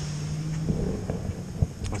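Wind buffeting the microphone over the steady low drone of a distant jet ski engine out on the water; the drone stops a little under a second in. A few faint clicks come near the end.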